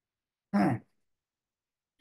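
A single short vocal sound from a man about half a second in: a brief throat-clear or grunt-like 'hm'.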